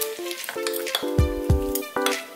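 Shredded potato sizzling as it slides into a hot frying pan and is pushed about with a wooden spatula. Background music with plucked notes plays over it, with two deep bass notes just past the middle.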